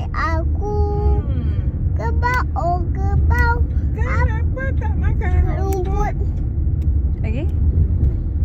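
A child singing and chattering in a sing-song voice over the steady low rumble of a car's cabin on the move.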